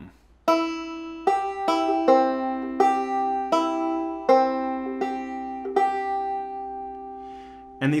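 Five-string banjo in G tuning picked two-finger style, playing a slow phrase of about nine single plucked notes from a partial C chord shape, the last few notes long and left to ring out.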